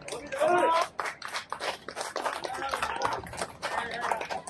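People's voices calling out and chattering, loudest about half a second in, with many short sharp clicks mixed in.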